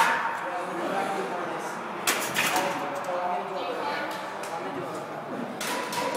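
Heavily loaded barbell, about 405 lb of iron plates, clanking against the steel squat rack as it is set back in its hooks: a couple of sharp metal strokes about two seconds in and again near the end, with gym voices murmuring behind.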